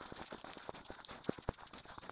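Footsteps on a leaf-strewn woodland dirt path, sped up six times, so they come as a rapid, irregular patter of clicks and knocks, with two louder knocks near the middle.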